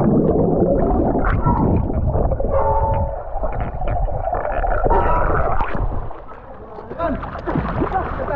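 Muffled underwater sound from a camera submerged in a swimming pool: a loud rush of bubbles and churning water as a swimmer plunges past. It eases off for a moment about six seconds in.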